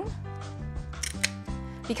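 Background music with sustained notes, and a few sharp snips about a second in from kitchen shears cutting the fins off a tilapia.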